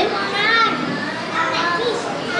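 Young children's voices, several talking and calling out over one another.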